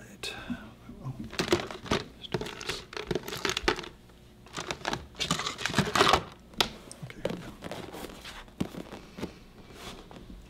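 Clip-lead wires of an electroacupuncture unit handled and untangled by hand, making an irregular run of rustling, crinkling and clicking noises.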